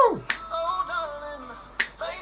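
An a cappella vocal group singing in close harmony, with a voice swooping steeply down in pitch at the start and two sharp snaps about a second and a half apart.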